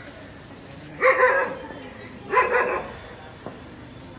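A dog barking twice, two short loud barks about a second apart.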